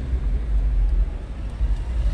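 Steady low rumble of road traffic, with cars and motorcycles passing on a busy street.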